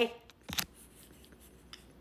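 A few short, faint clicks in an otherwise quiet room, the clearest about half a second in and smaller ticks later.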